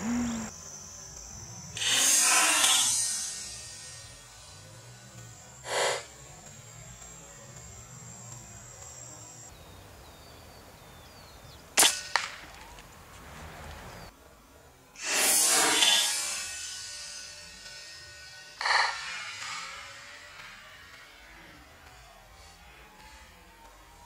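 Several sudden sounds: a sharp crack about twelve seconds in, typical of the Artemis M22 air rifle firing, and two bursts of pigeon wing flapping lasting a second or so each, one just before the shot and one a few seconds after, with a few shorter knocks between.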